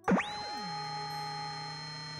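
Synthesized sci-fi laser beam sound effect: pitches sweep sharply up and down for about half a second, then settle into a steady electronic tone.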